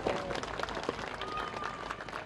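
Audience applauding: many hands clapping in a dense, even spatter.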